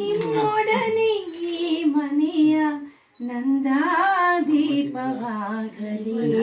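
A solo voice singing in a woman's high range, holding notes and bending between them with wavering ornaments, with a short break about halfway through.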